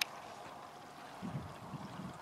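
Faint outdoor ambience: a single sharp click at the very start, then low, irregular wind rumble on the microphone from about a second in. No motor is clearly heard.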